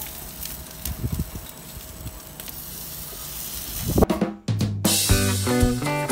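Chicken sizzling on the hot grates of a gas grill, with a few soft knocks as pieces are set down. About four and a half seconds in, background music with a drum beat starts and drowns it out.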